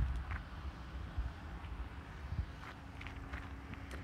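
Quiet outdoor background: a low rumble of wind on the microphone, with a few faint footsteps on gravel.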